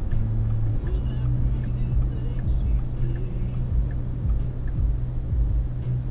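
Car driving at highway speed, heard from inside the cabin: a steady low engine and road drone with rumble underneath.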